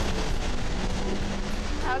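A vehicle engine running hard under a steady rushing noise, which stops as a voice starts near the end.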